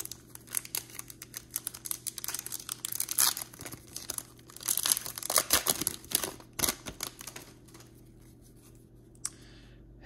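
Foil trading-card pack wrapper being torn open and crinkled by hand, a dense crackle for about seven seconds that then dies away, with a single click near the end.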